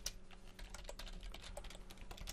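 Computer keyboard keys tapped in quick succession, faintly, as a word is deleted and retyped in a code editor.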